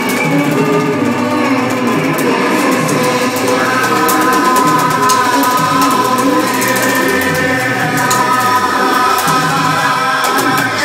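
Live rock band playing: drums with busy cymbals, bass, electric guitar and singing, with long held notes from about three and a half seconds in.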